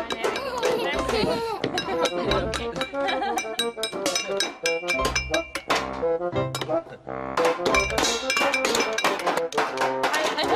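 Wooden spoons banging on metal pots, pans and a tin box, struck fast and irregularly, with clanging and ringing tones.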